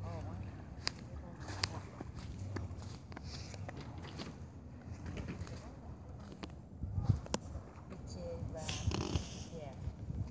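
Indistinct voices over a steady low outdoor rumble, with a few sharp clicks.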